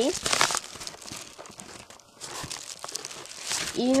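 Crinkling and rustling of product packaging being handled by hand, in several irregular stretches.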